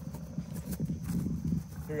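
Faint, soft scuffs and light footfalls of cleats on infield dirt, over a low outdoor rumble, with a voice saying "Go" at the very end.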